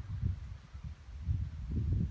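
Wind buffeting the phone's microphone outdoors: an uneven low rumble that dips about a second in and builds again near the end.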